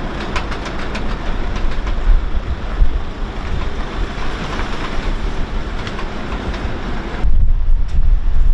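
Wind buffeting the microphone over steady outdoor noise, with scattered small clicks and ticks in the first few seconds. The low wind rumble gets heavier near the end.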